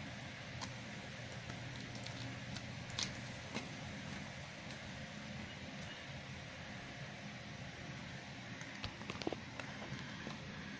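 Small hard plastic toy parts handled and snapped together, giving a few faint clicks and taps over a steady background hiss: sharper clicks about three seconds in and a quick cluster near the end.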